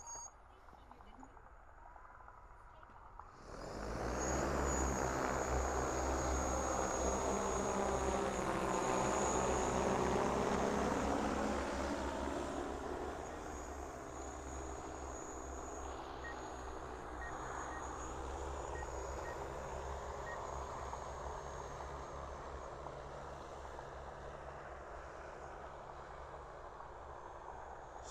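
DJI Agras T20 sprayer drone spinning up its rotors and lifting off about three and a half seconds in: a loud rotor drone with a thin high whine over it. It is loudest for the first several seconds in the air, then fades to a lower steady drone as it flies off.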